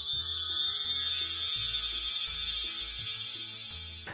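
A shimmering, sparkly high chime sound effect that begins just before and slowly fades away, over background music with a low bass line.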